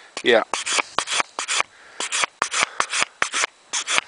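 Nicholson file card's short steel bristles scrubbed back and forth across a metal file in quick, scratchy strokes, about six a second, with a brief pause near two seconds in. The card is clearing brass pinning lodged in the file's teeth.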